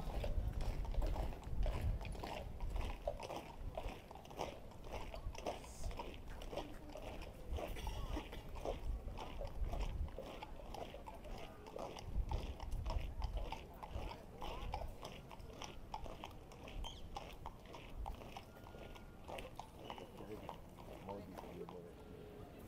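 Boots of a column of guardsmen marching on the road, a steady rhythm of footfalls with no band music playing.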